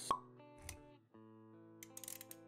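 Intro music under an animated logo sequence, with a sharp pop sound effect just after the start and a soft low thud about half a second later. The music cuts out briefly, then comes back with held notes about a second in.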